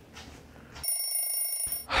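A steady, high ringing tone of several pitches at once sounds for just under a second, starting about a second in. It is followed right at the end by a sharp breathy sigh.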